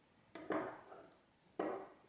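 Two light knocks of steel files being set down on a wooden workbench, about a second apart.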